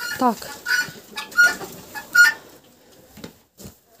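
Hens calling loudly, "shouting": a falling squawk at the start, then three short sharp calls less than a second apart, dying away after about two and a half seconds. Calls like these, which start in January, months before the hens begin to lay in April.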